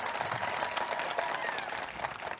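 Audience applauding, a steady clapping of many hands.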